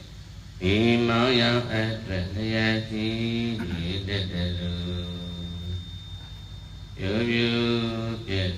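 A Buddhist monk chanting into a handheld microphone: one man's voice in long, level-pitched phrases. There is a short pause just after the start, and the voice grows louder again near the end.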